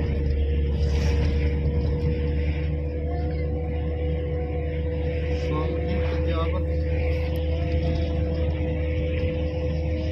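Steady low rumble of a car's engine and tyres while driving, heard from inside the cabin, with a steady hum running through it.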